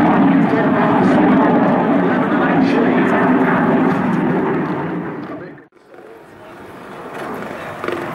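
Hawker Hunter jet flying its display: a loud, steady jet roar that dies away to near silence about five and a half seconds in, then a quieter rushing noise builds back up.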